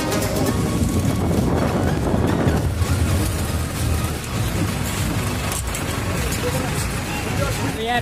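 Low, steady rumble of a bus's engine and road noise, with voices in the background.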